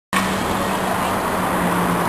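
Street traffic noise with a steady engine hum underneath.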